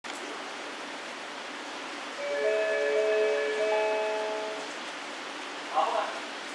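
Electronic platform approach chime at a JR West station. A short melody of several overlapping bell-like notes starts about two seconds in and lasts some two and a half seconds, signalling the approach announcement for an incoming train. A steady hiss of rain sounds underneath.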